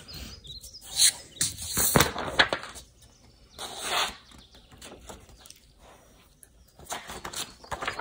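A sheet of paper being handled by hand: rustling as it is folded in half and creased, then lifted and moved. The sound comes in short bursts, with a quieter gap about two thirds of the way through.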